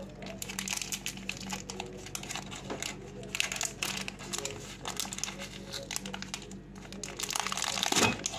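Wrapper of a packaged bun crinkling and rustling in the hands as it is opened, in irregular crackles with louder bursts midway and near the end.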